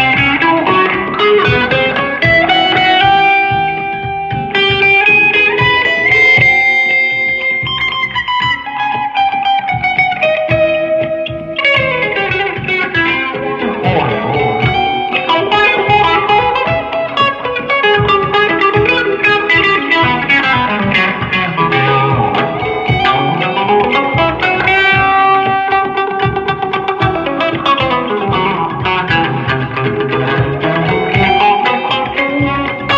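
Telecaster-style electric guitar improvising melodic lines in the Indian Poorvi thaat scale over a looped bass line: runs of quick notes with sliding pitches.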